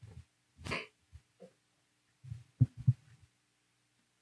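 A few soft thumps and knocks of handling and movement at a church pulpit, with a brief rustle just under a second in and two sharper knocks a little after halfway, the loudest sounds here, over a faint steady hum.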